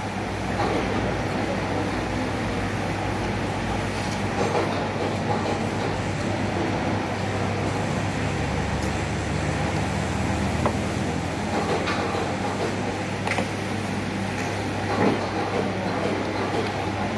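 A metal fork and spoon clink sharply against a ceramic plate a few times while a man eats, over a steady low hum of background noise.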